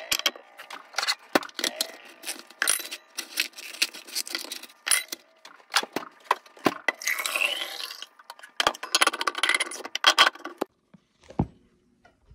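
A stainless steel water bottle and its screw lid are handled on a counter, making repeated metallic clinks and knocks. Partway through come two stretches of rushing noise, a second or two each, as the bottle is filled with water.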